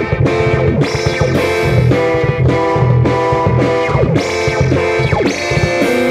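Live rock band playing: electric guitar chords with a little distortion over bass guitar, in a steady rhythm that breaks about twice a second, with a few sliding notes.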